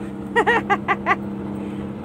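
A woman laughing in four short, quick bursts about half a second in, over the steady hum of a truck cab with its engine running.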